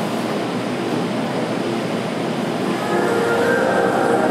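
Audience applauding, a steady wash of clapping, with music coming in about three seconds in.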